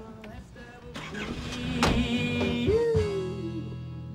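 A car driving off, its noise swelling over a couple of seconds with a sharp knock partway through. Near the end a sustained musical chord comes in, with one note sliding down in pitch.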